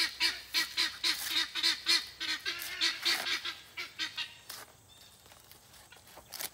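A flock of farm fowl calling in a rapid, even run of honking calls, about five a second, fading out after about four seconds. Near the end comes a short rustle of a corn husk being pulled back.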